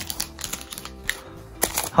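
Paper trading cards being handled: a scatter of light clicks and taps as a stack of cards is set down and the next stack is picked up, over quiet background music.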